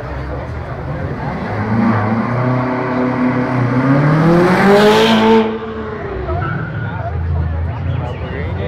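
Sports car engine revving as the car accelerates past, its pitch climbing for about three seconds to the loudest point and then cutting off suddenly as the throttle is lifted, about five and a half seconds in.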